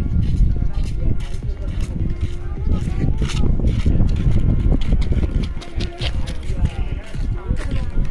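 Indistinct voices and music together over a heavy, uneven low rumble.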